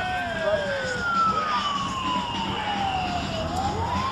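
A siren wailing in a slow cycle: its pitch falls steadily for about three seconds, then starts to rise again near the end.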